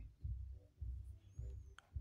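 Faint low thumps repeating about twice a second, with one sharp click near the end.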